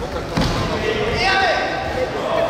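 A single thud about half a second into a karate bout on foam mats, followed by raised voices calling out in a large echoing hall.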